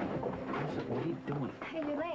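Soft, indistinct voices talking and murmuring, with no clear words.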